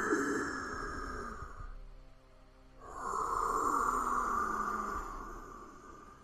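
Two long, breathy, eerie sighs from a woman's voice, one after the other with a short gap between, heard as a horror sound effect.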